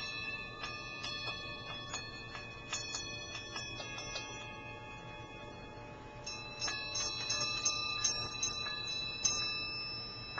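Small metal sound-healing bells struck again and again at an uneven pace, each strike ringing on in several high, overlapping tones. The strikes thin out in the middle and come thick again about seven seconds in.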